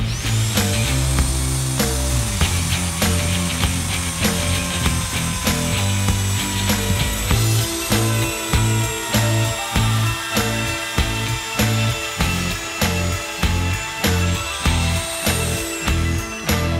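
Compact trim router running with a high whine as it trims the edge of a plastic laminate sheet glued to plywood. It spins up at the start and winds down at the end. Background music with a steady beat plays throughout.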